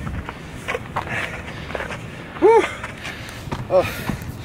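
A man's short voiced 'ooh' of exertion, rising then falling in pitch, about two and a half seconds in, and another 'oh' near the end, as he climbs a steep dirt trail. His footsteps crunch on the dirt throughout.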